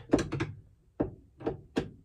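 Small sharp clicks and taps as a sunglasses-holder bracket and its screws are held against a rearview mirror base and lined up with a screwdriver. A quick cluster of clicks comes first, then three single clicks about half a second apart.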